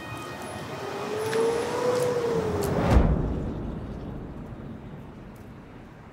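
A whoosh that builds to a peak about three seconds in, then slowly dies away.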